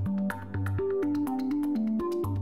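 Electronic background music: a synthesizer melody over a stepping bass line, with a steady, fast ticking beat.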